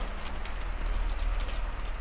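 Soft silk saree fabric rustling as it is handled, lifted and folded over: a steady soft swishing with a few faint crinkles.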